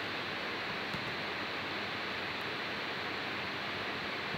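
Steady, even background hiss with no other distinct sound.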